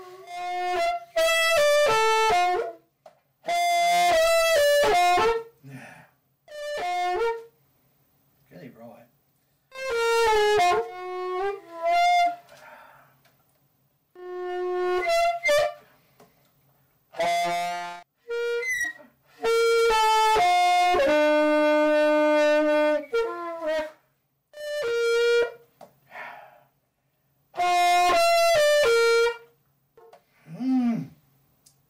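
Alto saxophone played by a beginner a week into learning: short phrases of a few held notes that break off and restart after pauses of a second or two, about ten attempts in all, one of them ending on a longer low note.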